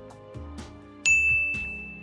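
Quiet background music, then about a second in a single bright ding sound effect that rings and fades away: a success chime as the check mark appears.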